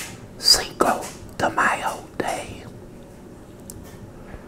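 A man whispering a few short phrases in the first two and a half seconds, then only quiet room tone.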